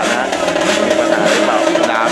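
Drag-racing motorcycle's engine held running at high revs on the start line, a steady high note, with a commentator's voice and crowd noise over it.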